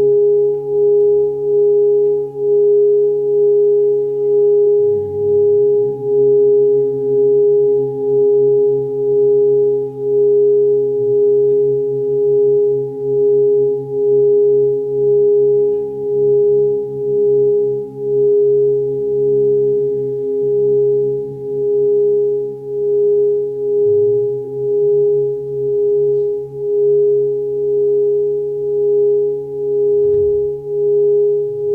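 Sustained pure meditation drone tone, swelling and dipping about once a second, over a softer low hum.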